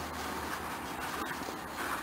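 Low, steady background hiss with no distinct event standing out.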